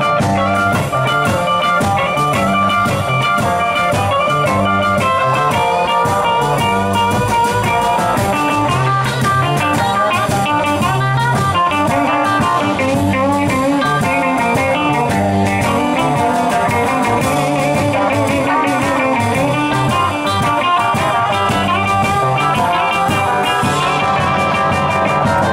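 Live blues band playing instrumentally: two electric guitars over upright double bass and a drum kit with cymbals, steady throughout.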